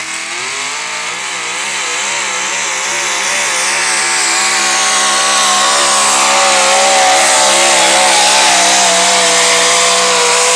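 A pulling pickup truck's engine at full throttle, dragging a weight-transfer sled down the track. Its pitch wavers up and down rapidly at first, then holds steadier and a little higher as it grows louder.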